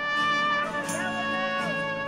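Live band music: trumpet and trombone holding long notes over a strummed acoustic guitar, with a small bend in pitch about a second in.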